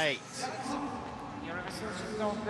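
Speech: a male commentator's voice trails off in a falling tone at the start. It is followed by low, steady stadium background sound with faint distant voices.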